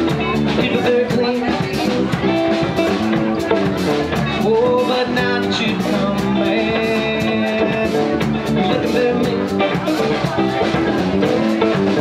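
Live rock band playing an instrumental passage: electric guitar, bass guitar and drum kit keeping a steady beat.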